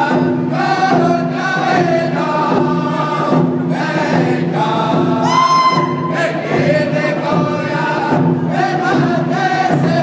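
A group of men singing a hand drum song together, beating rawhide hand drums as they sing. A single high voice rings out above the group a little after halfway.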